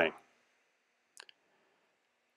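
A single short computer mouse click about a second in, against near silence.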